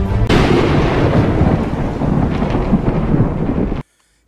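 A thunderclap with rolling rumble, sudden and loud just after the start, then a steady roar that cuts off abruptly near the end.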